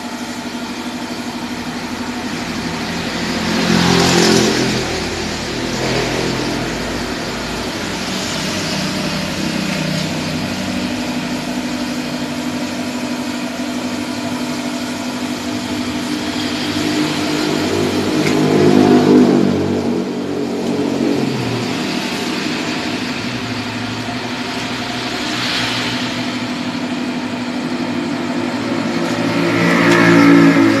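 A car engine running at idle, steady, with a few short revs or swells: about four seconds in, near nineteen seconds, more faintly near twenty-six seconds, and at the end.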